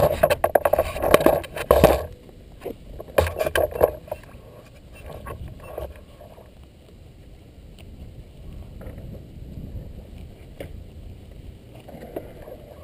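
Camera handling noise: knocks, rubbing and scraping as the camera is moved about and set down at road level, loud for about the first two seconds and again briefly three to four seconds in. After that only a faint low rumble with a few light clicks.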